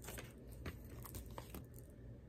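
Faint rustling of paper, with a few light crackles and ticks, as a greeting card and its envelope are handled.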